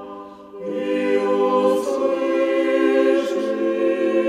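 Church choir singing Russian Orthodox liturgical chant a cappella in sustained chords, with a short breath between phrases just after the start.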